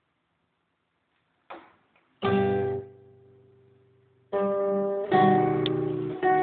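Acoustic guitar strummed. After a short silence a chord is struck about two seconds in and rings out, fading. Strumming resumes near the end with further chords.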